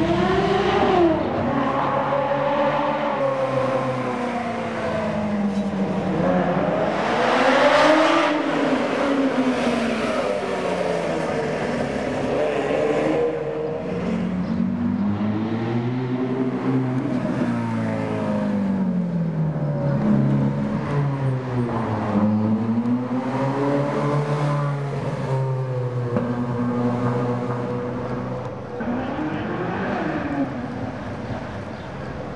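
Ferrari sports cars, among them a Ferrari 360 Spider, driving past one after another, engines revving up and easing off again and again. The loudest rev comes about seven to eight seconds in.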